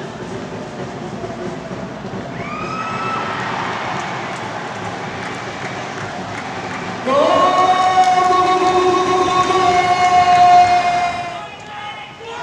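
Stadium crowd noise with a horn sounding. A shorter horn blast comes about two and a half seconds in. A long, loud horn blast starts about seven seconds in, rising briefly in pitch at its start, and cuts off suddenly near the end.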